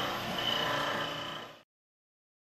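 A steady mechanical rattling noise that fades and then cuts off about one and a half seconds in.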